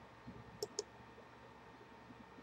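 Two quick, faint clicks about a fifth of a second apart, made at a computer, in otherwise quiet room tone.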